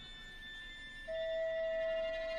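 Contemporary chamber music for recorder and ensemble: faint sustained high tones, then about a second in a single steady, pure held note enters and holds.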